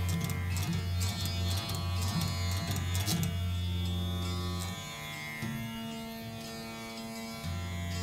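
Rudra veena playing Raga Malkauns. Deep, sustained bass notes come with a run of quick plucked strokes for about the first three seconds. From about five seconds in the notes are quieter, higher and held longer.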